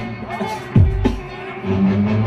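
Music played by the battle DJ over the venue's sound system, with a deep bass drum hitting about three-quarters of a second in.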